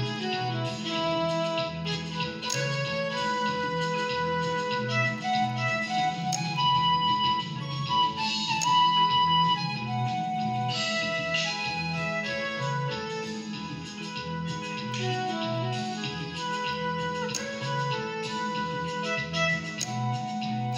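Electronic keyboard played as a right-hand melodic solo, single notes and short runs, over a steady repeating backing beat and bass line.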